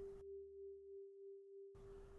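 Near silence under one faint, steady pure tone, a single held note of the background music that gently wavers in loudness.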